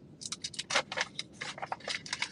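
A quick, irregular run of light clicks and rattles, about a dozen in two seconds, the loudest a little under a second in.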